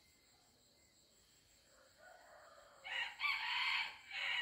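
A rooster crowing once, a drawn-out crow that starts about three seconds in.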